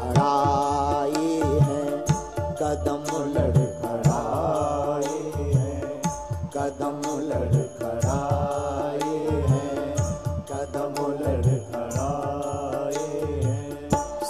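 Devotional bhajan: a male voice singing long, held, ornamented lines over frequent drum beats.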